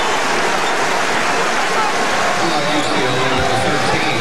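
Steady crowd noise filling a basketball arena, the massed voices of thousands of spectators, with a faint voice showing through near the end.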